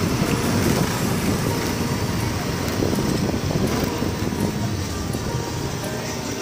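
A motor scooter running while it rides through a busy street, mixed with traffic, background voices and music.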